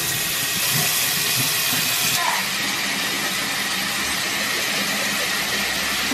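Bathroom sink faucet running, a steady hiss of tap water pouring into the basin.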